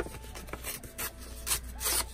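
Scrap paper rustling and rubbing as it is handled, in several short scratchy strokes, the last near the end the loudest.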